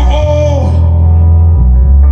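Live hip-hop music played loud through a festival PA, with a heavy, steady bass line and a vocal note sliding down at the start. From about a second in, the highs are cut away, leaving a muffled bass-and-mid sound.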